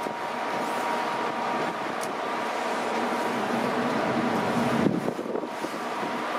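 Steady wind and machinery noise aboard a coastal ship under way: a rushing haze over a low hum, with a thin steady high tone running through it.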